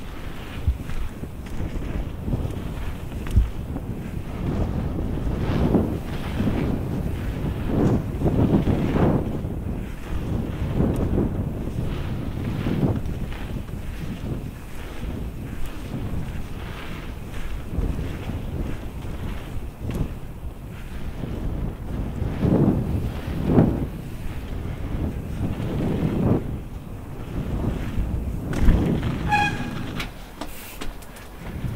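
Wind rushing over a GoPro Hero 5 Black's microphone and mountain bike tyres rolling on a wet pump track, swelling and fading every second or two as the bike pumps over the rollers. A brief high squeak comes near the end.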